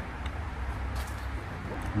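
Outdoor urban background: a steady low rumble of distant traffic.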